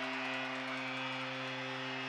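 Hockey arena goal horn holding one steady low note, signalling a goal, with crowd noise beneath it.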